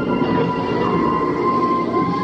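Dark-ride cab rumbling steadily along its track, over the ride scene's soundtrack of held, droning tones.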